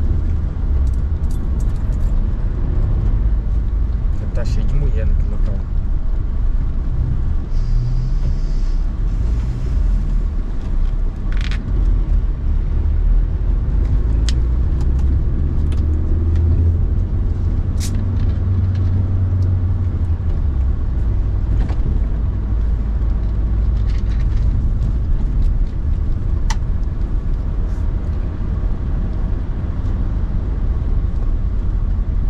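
Steady low rumble of a car's engine and tyres heard from inside the cabin while driving, with a few sharp clicks along the way.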